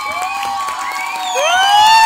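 Audience cheering with several overlapping high calls that slide up and down in pitch, building and growing louder toward the end.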